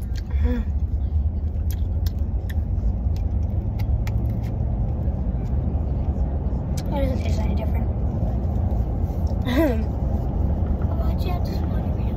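Steady low rumble of a car's engine and road noise heard from inside the cabin. A few short vocal sounds break in about half a second in, around seven seconds and near ten seconds, along with scattered small clicks.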